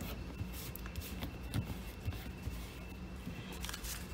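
Faint paper handling: scraps of paper rustling and tapping lightly as they are smoothed down and picked up off a tabletop, over a low steady hum.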